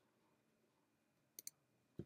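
Near silence broken by a quick pair of faint computer mouse clicks about one and a half seconds in, and another faint click at the very end.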